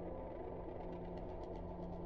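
A faint, steady low drone holding a few sustained pitches, with a scattering of light ticks about a second in.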